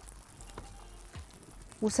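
Meat-stuffed hawawshi flatbreads frying in frying pans over medium heat, a faint steady sizzle with a few light ticks.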